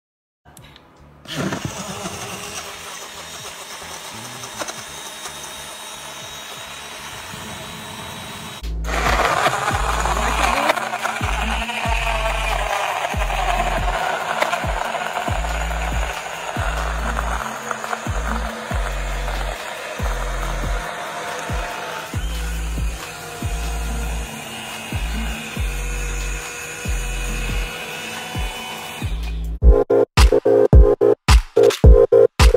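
BlendJet 2 cordless portable blender running with a steady whir under background music. A pulsing bass beat comes in about nine seconds in.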